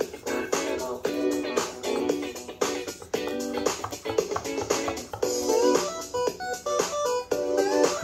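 Upbeat electronic dance tune with a steady beat and short melodic notes, played by an EMO AI desktop pet robot as it dances.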